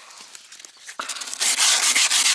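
Hand sanding with sandpaper on the weathered, painted wooden wall of a beehive, rubbing off the old flaking paint to prepare it for repainting. The rubbing starts about a second in and then runs on loud and steady.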